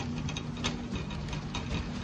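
Grocery store background: a steady low hum and rumble with scattered light clicks and rattles, one sharper click about two-thirds of a second in.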